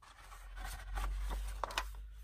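Sheets of old paper rustling and sliding against each other as they are handled, with a few sharper crinkles near the end.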